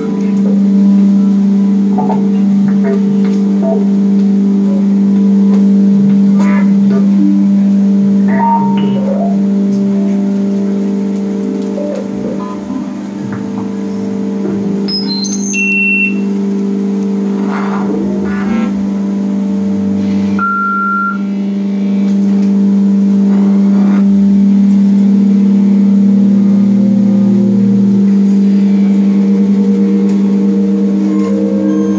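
Live free-improvised music for electric guitar and modular synthesizer electronics. A loud, steady low drone is held throughout. Scattered short bleeps, chirps and glitchy clicks sound over it.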